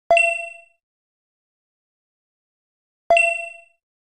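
Two identical chat-message notification dings about three seconds apart, each a bright chime that dies away within about half a second.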